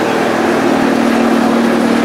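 An engine running at a steady speed, a constant hum that doesn't rise or fall.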